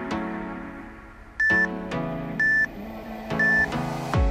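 Three short electronic beeps, one a second, from an interval timer counting down the last seconds of an exercise, over background music.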